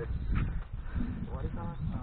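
Voices of people calling out, off-microphone, strongest near the end, over a steady low rumble on the microphone.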